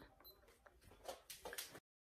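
Near silence: faint room tone with a few soft clicks about a second in, then dead silence at an edit cut near the end.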